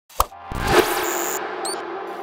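Title-card intro sound effects: a sharp click, then a rush of noise swelling to a peak under a second in and ringing out, with a few short high chirps near the end as it fades into a sustained tone.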